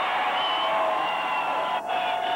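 Loud rock concert heard from the crowd: cheering and crowd noise, with long held tones ringing from the stage.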